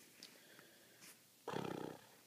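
Near silence, then about one and a half seconds in a woman says a drawn-out, rough-voiced "or" for about half a second.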